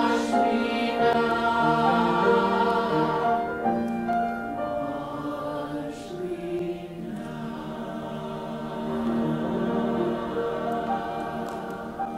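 Mixed church choir of men's and women's voices singing a hymn in parts, with a short break between phrases about six seconds in.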